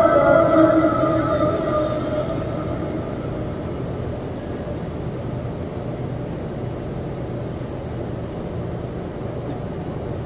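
An imam's drawn-out chanted note of prayer recitation over loudspeakers, fading out about two seconds in, followed by a steady low rumble of background noise.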